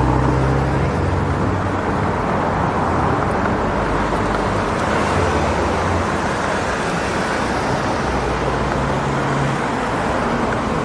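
Steady road traffic noise with a low engine hum that swells and fades a few times as cars pass on the road.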